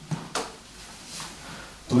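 Cloth rustling as a bandana blindfold is pulled off the head, with two short scratchy sounds near the start and quieter rustling after them.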